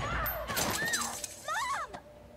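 Glass shattering in a struggle, with a person crying out several times in short, rising and falling yells.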